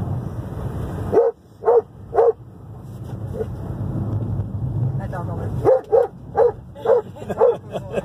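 A Doberman barks with its head out of the open rear window of a moving car. There are three barks about a second in, a single bark midway, then a quick run of barks near the end. Wind rushes at the open window and road noise runs underneath.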